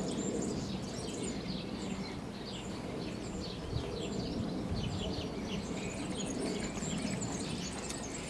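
Small birds chirping in quick, repeated short calls over a steady low outdoor rumble.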